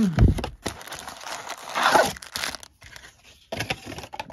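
Cardboard trading-card box being torn open and its sealed foil card packs pulled out: a low thump at the start, a loud tearing rustle about two seconds in, then lighter crinkling and handling.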